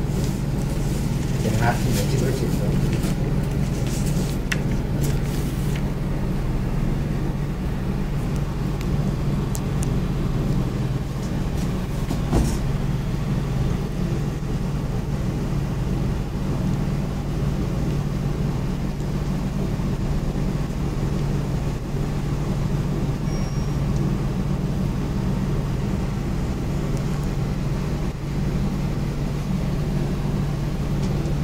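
A steady low hum of background noise, even in level throughout, with a few light clicks and taps in the first several seconds and one more near the middle.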